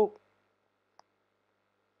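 A man's spoken word trails off right at the start, then near silence with a single faint short click about a second in.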